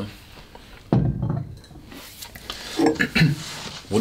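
A heavy, thick-bottomed glass whisky bottle is set down on a barrel-top table with a single sharp knock about a second in. More glassware is handled near the end.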